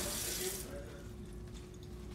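Kitchen faucet water running into a stainless steel sink, cut off about half a second in as the tap is turned off with a paper towel; a faint steady hum remains afterwards.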